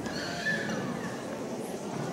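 Murmur of voices in a hall, with one higher voice sliding down in pitch about half a second in.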